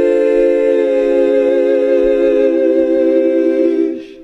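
'Heavenly sheesh' meme sound effect: a choir-like chord of voices held on one sustained vowel, the chord stepping slightly lower about a second in and again past halfway, then fading out at the very end.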